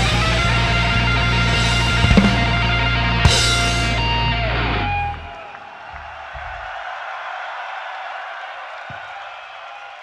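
A live heavy metal band (distorted electric guitars, bass and drums) plays the closing chord of a song, with a guitar note sliding down in pitch as the band stops about halfway through. After that a large festival crowd cheers.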